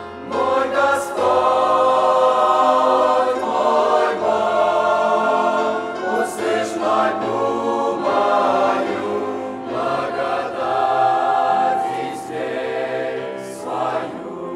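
Mixed youth choir of young men and women singing a Christian song in sustained phrases, with brief breaks between lines.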